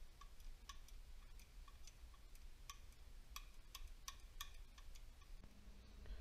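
Faint, irregular metallic clicks, about two a second, from a KO3 turbocharger's wastegate flap and arm being worked open and shut by hand to free it up after it was stuck.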